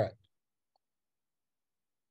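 The last syllable of a spoken reply ending just after the start, then dead silence with no background sound at all.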